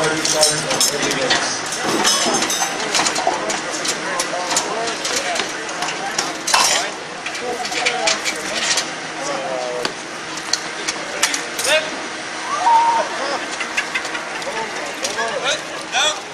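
Voices talking, with frequent short sharp clicks and knocks throughout.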